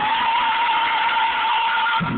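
Gospel choir holding one long, loud high note.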